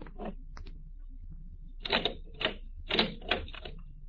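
Radio-drama sound effect of a safe's combination dial being worked: a run of short, sharp clicks starting about two seconds in, over a faint low hum.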